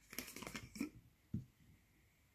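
Plastic screw cap twisted off a Prime drink bottle, a quick run of crackles and clicks as the seal breaks, followed by one short thump about a second and a half in.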